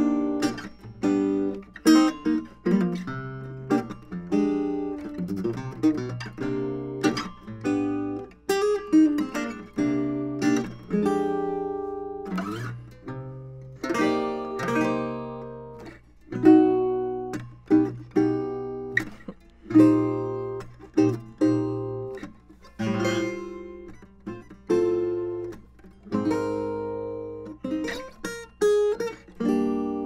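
A 1934 Kay acoustic guitar played solo: picked chords and melody notes, each ringing out and fading, in a steady flowing piece.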